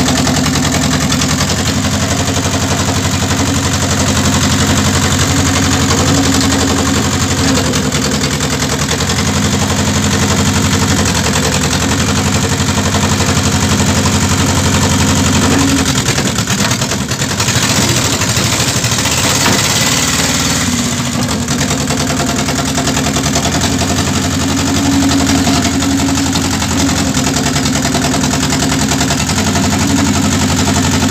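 Engine of a wedge-type firewood-splitting machine running steadily under load as the wedge is driven through logs. A brighter, hissing noise rises over it for a few seconds just past the middle.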